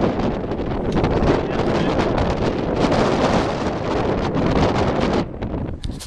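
Wind blowing across a small handheld camera's microphone: a loud, steady rush of noise that eases briefly near the end.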